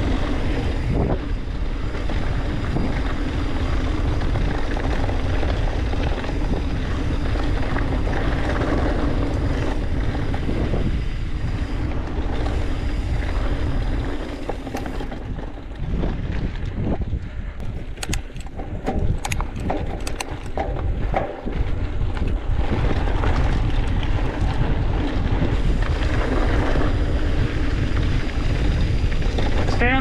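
Wind buffeting the microphone of a mountain bike rider's camera while riding a trail, a steady rush with riding noise underneath. About halfway through the rush eases and a run of sharp clicks comes through, then it picks up again.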